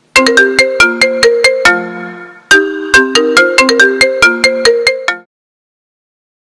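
Mobile phone ringtone: a tune of quick, sharply struck notes in two phrases, cutting off suddenly about five seconds in.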